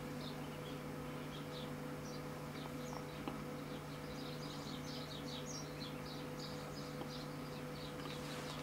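Faint birds chirping in quick, irregular series of short high notes, busiest in the middle stretch, over a steady low electrical hum.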